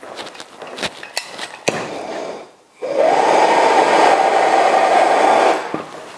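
A few clicks and knocks of handling, then a plumber's gas blowtorch lit and burning with a steady, loud roar for about three seconds before it cuts off suddenly.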